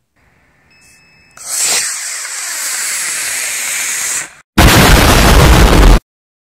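A short, high steady beep, then a model rocket's solid-fuel motor lights about a second and a half in with a sudden loud rushing hiss that runs for about three seconds, its pitch sweeping as the rocket moves away. Near the end comes a much louder, distorted rush of noise with a heavy low rumble that cuts off abruptly.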